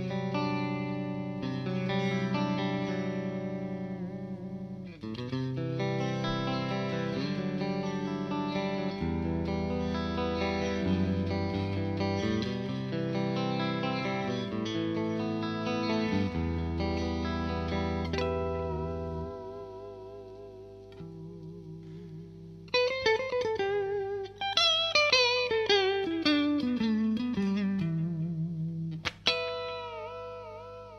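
Clean electric guitar, a Music Man Silhouette on its DiMarzio AT-1 bridge pickup combined with the middle pickup, playing a rhythm part with a honky tone. It goes quieter partway through, then near the end a falling lead line with wavering vibrato.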